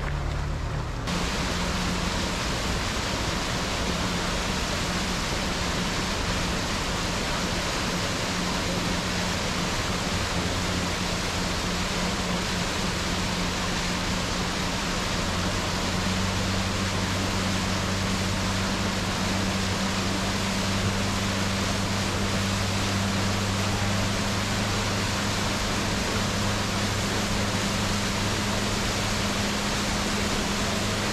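Steady rushing noise of wind and water from a small boat under way, with a low engine hum underneath that grows stronger about halfway through.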